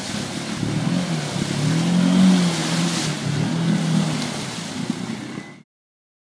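ATV engine revving hard as the quad churns through deep mud and water, its pitch wavering up to a peak about two seconds in and back down, over the hiss and splatter of thrown mud. The sound cuts off suddenly near the end.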